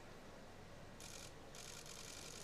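Near silence: faint room tone from the competition hall, with a soft hiss coming in about halfway through.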